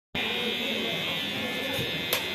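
Electric hair trimmer running with a steady high buzz as it cuts a baby's hair.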